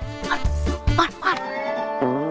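Comic background score: pitched music with a bass beat, with a few short, bending comic sound effects laid over it.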